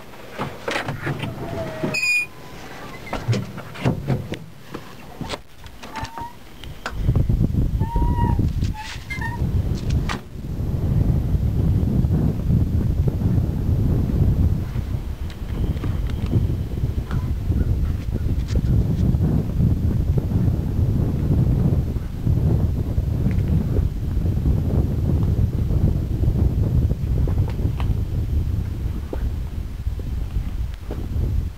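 A bulldozer's steel cab door unlatched and opened, with clicks, clunks and a few short squeaks in the first several seconds. After that, a continuous low, gusting rumble of wind on the microphone.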